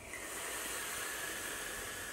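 Vape being drawn on: a steady hiss of the firing coil and air pulled through the tank, with a faint whistle.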